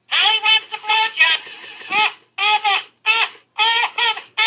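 Battery-powered novelty talking parrot toy squawking through its small speaker: a run of short, pitched squawks, about three a second.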